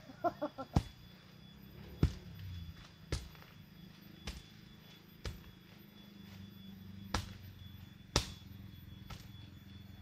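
Sharp knocks of a hand tool striking the ground, roughly once a second, while a planting hole is dug in the soil.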